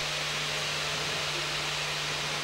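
Steady, even hiss with a faint low hum underneath, unchanging throughout, with no distinct events.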